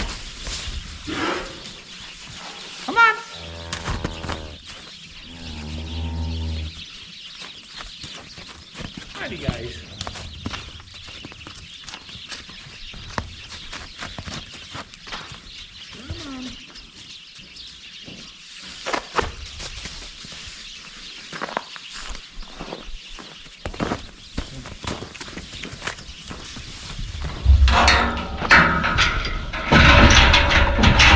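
Holstein heifers mooing, two calls a few seconds in, with scattered knocks and rustling of the cattle moving in the snowy yard and barn bedding. Near the end there is a louder clatter of a steel pen gate being handled.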